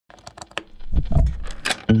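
Guitar cable jack being plugged into an amplifier's input: a quick run of sharp clicks and crackles, then a low rumble with more crackle about a second in.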